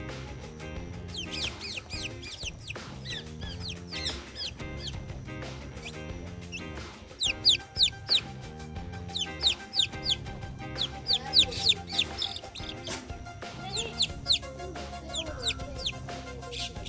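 A week-old chicken chick peeping in quick runs of short, high, falling peeps, loudest in the middle stretch. Background music plays underneath.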